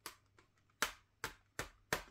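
About five sharp, irregularly spaced plastic clicks and clacks: CD jewel cases being handled as one CD is put down and the next picked up.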